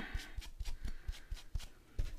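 Light handling of paper-craft supplies: a brief paper rustle at the start, then a series of soft, irregular taps as a foam ink applicator is picked up and pressed onto an ink pad.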